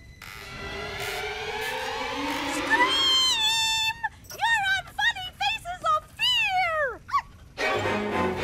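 A high-pitched cartoon voice rises over about three seconds into a long held shriek, then breaks into a run of short rising-and-falling cackles. The last cackle falls away steeply. Dramatic music plays underneath.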